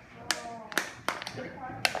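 Aluminium drink can being squeezed by hand, giving several sharp pops and clicks at uneven intervals as its wall buckles.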